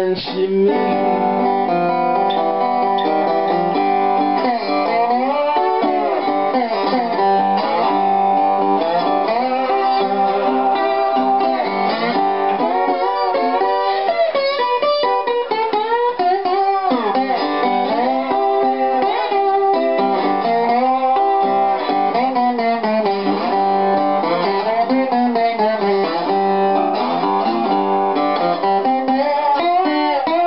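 Republic tricone resonator guitar, metal-bodied, played with a bottleneck slide in a blues instrumental break: notes glide up and down between pitches over a picked accompaniment.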